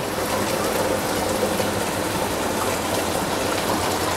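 Hot water poured in a steady stream into a pot of oil-fried rice, splashing as it lands: the cooking water, about double the rice by measure, going in for the pulao.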